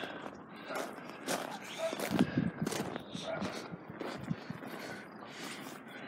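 Footsteps and handling noise from a handheld camera: irregular light clicks and rustles.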